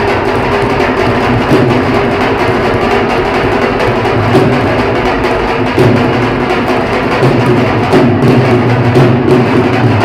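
A group of four Punjabi dhol drums, double-headed barrel drums played with sticks, beaten together in a fast, dense, unbroken rhythm.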